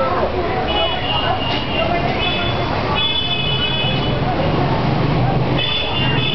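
Street traffic: engines running, with vehicle horns sounding several times in held, high toots, over people talking.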